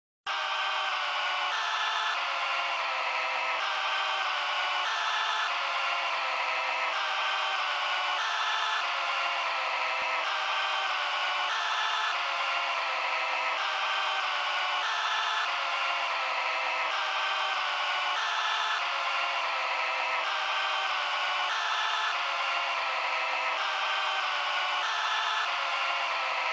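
Intro of a doomcore techno track: a buzzy electronic tone with no bass or drums, switching back and forth between two pitches about every three-quarters of a second at a steady level.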